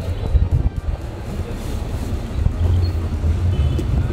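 Low, steady rumble of a sleeper coach heard from inside its cabin, with background music over it.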